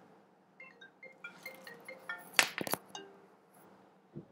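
A scatter of faint, short clinking tones, with two sharp clicks about two and a half seconds in.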